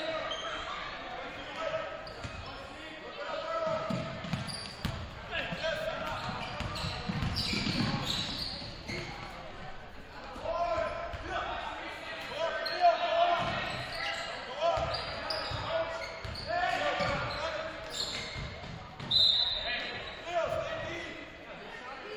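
Basketball game in a gymnasium: a basketball dribbling on the hardwood floor among the shouts and chatter of players and spectators, echoing in the hall.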